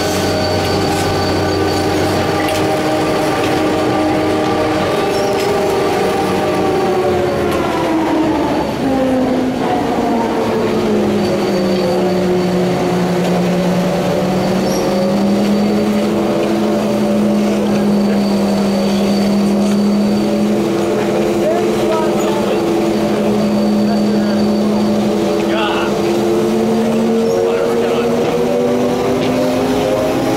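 Detachable chairlift terminal machinery whining: a steady pitched hum with several overtones that drops in pitch about eight seconds in, bottoms out a few seconds later, then slowly climbs again.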